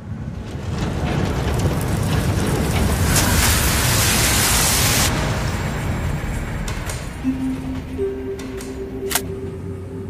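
Cinematic trailer sound design: a swelling rush of noise over a deep rumble, loudest about three to five seconds in, then easing as two steady low tones come in near the end, with a sharp click just before the end.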